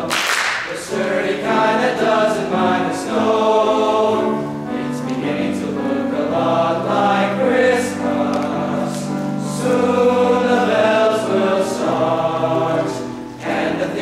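Men's choir clapping briefly at the start, then singing in harmony in sustained, stepwise chords.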